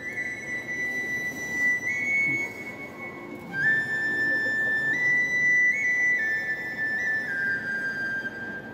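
A slow, high melody on a flute-like instrument: long held notes stepping up and down, with two notes sounding together at times.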